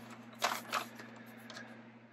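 Faint rustling of paper sheets as a folded letter is handled and unfolded, with a few short crinkles in the first second.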